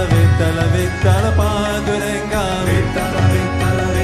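Devotional kirtan music: a chanted melody over a steady held drone, with a regular drum beat underneath.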